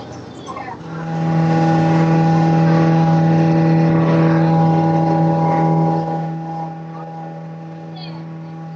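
Ferry boat's engine running under way, a loud steady drone that holds one pitch throughout. It starts about a second in and drops in level about six seconds in without changing pitch.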